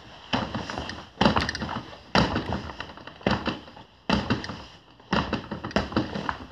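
Hand and elbow strikes landing on a BOB torso training dummy: chops, elbows and back fists. About seven sharp thuds come roughly a second apart, each dying away quickly.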